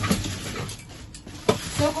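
Plastic wrap and cardboard in a dumpster rustling and scraping as the trash is shifted, with a sharp knock about one and a half seconds in.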